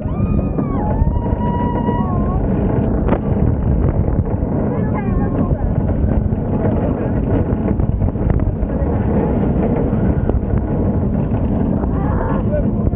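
Cheetah Hunt steel roller coaster train running fast along the track from the front row: a steady heavy rush of wind and track noise. Over it, riders' voices yell in rising and falling cries, mostly in the first two seconds and again around five seconds in.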